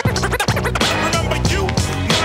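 Hip-hop beat with turntable scratching: a record is worked back and forth in quick strokes, each one a rising or falling glide, over a steady drum and bass loop.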